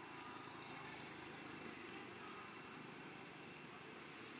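Faint steady outdoor ambience: a low, even rumble of distant traffic with thin, steady high-pitched tones above it.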